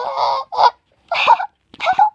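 A high-pitched squealing voice in about five short bursts, its pitch wavering and curling.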